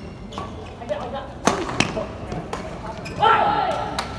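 Badminton rackets striking a shuttlecock during a doubles rally: two sharp smacks about a second and a half in, then lighter hits. Shoes squeak on the court floor, and a loud drawn-out high-pitched sound comes about three seconds in.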